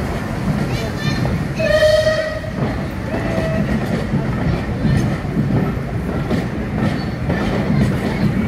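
Passenger coaches of a heritage train rolling slowly along the track, a steady low rumble with wheel clatter. About two seconds in comes one short, steady whistle blast, with a fainter, shorter one about a second later.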